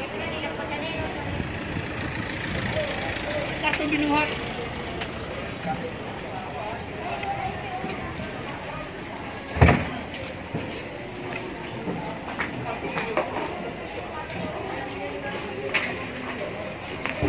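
Busy market-street noise: people talking in the background over a steady din of the street, with one loud thump a little past the middle.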